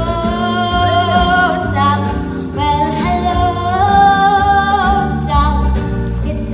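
Broadway show-tune music: a voice singing a melody with long held notes over band accompaniment.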